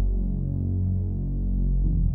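Background music: low, sustained tones held steady, with no speech.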